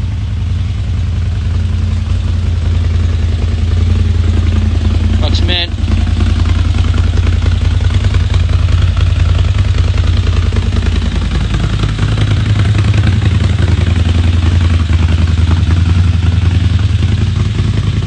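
CFMoto ZForce 950 Sport side-by-side's V-twin engine idling steadily with a low, even hum.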